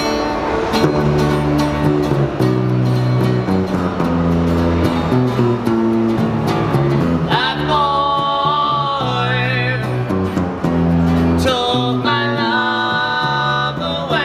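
Violin-shaped electric bass and acoustic guitar playing a 1960s pop song, with two men's voices coming in singing together about halfway through, breaking off briefly and coming back in near the end.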